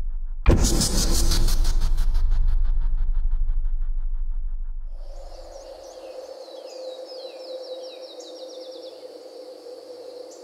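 A sudden loud boom about half a second in over a pulsing low rumble that fades away over the next few seconds. It gives way to a nature ambience of birds chirping, one with a quick run of short falling notes, over a steady insect-like hum.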